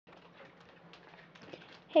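Faint room noise with a low steady hum and a few light rustles, then a woman says "hey" at the very end.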